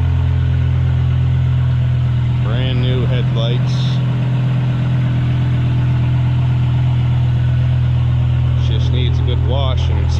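BMW E60 M5's 5.0-litre V10 idling steadily through a straight-piped exhaust, a low even drone.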